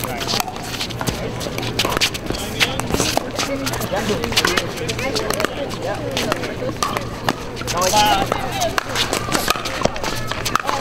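Pickleball rally: hard paddles striking the hollow plastic ball in sharp, irregular pops, mixed with pops from neighbouring courts, over a background of chatter from players and spectators. A voice calls out about eight seconds in.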